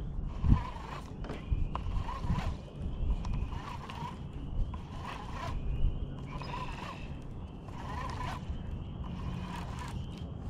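Baitcasting reel being cranked in short repeated bursts, a little more than one a second, as a jerkbait is worked back through the water, over a steady low rumble. A single sharp thump about half a second in is the loudest sound.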